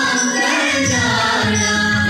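A mixed student choir singing an Indian classical devotional song to Krishna together, with harmonium accompaniment.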